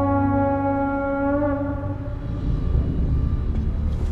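A shofar (ram's horn) blown in one long steady note that fades out about a second and a half in: the signal for the builders to gather.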